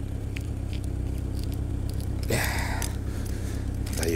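Office knife cutting into cold-stiffened tyre rubber: a few faint ticks, then a short scraping rasp a little over two seconds in, over a steady low hum.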